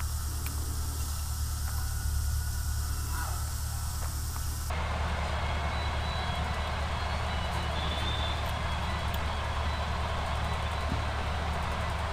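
Steady low hum under a constant hiss, with a few faint clicks of small phone parts being handled and pressed together. The hiss changes abruptly about five seconds in.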